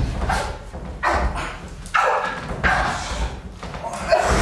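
Thuds and short cries from two people grappling, coming roughly once a second over a low steady rumble.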